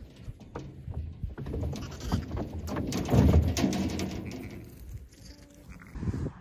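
Lambs bleating amid knocks and rustling as they are handled and lifted into a metal livestock trailer, with a low rumble that is loudest about halfway through.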